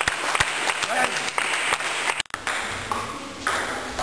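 Table tennis ball clicking against bats and table, a quick irregular series of sharp pings, with voices in a large hall. The sound breaks off abruptly about two seconds in, and a hazier stretch of room noise follows.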